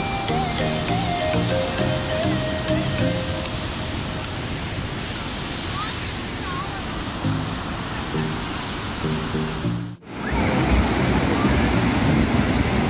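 Waterfall rushing over rocks in a steady roar of water, with background music over it. About ten seconds in the sound cuts out for a moment and the water comes back louder.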